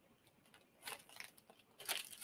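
A plastic zip-top bag crinkling faintly as it is handled, in a few brief rustles about a second in and near the end.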